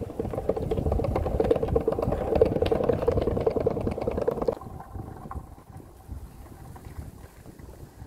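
Longboard wheels rolling over brick pavers: a loud rattling rumble with rapid clicks, stopping abruptly a little past halfway, after which only a quiet outdoor background remains.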